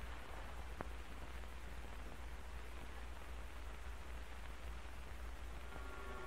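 Steady hiss and low hum of an old film soundtrack, with one faint click just under a second in. No gunshot is heard.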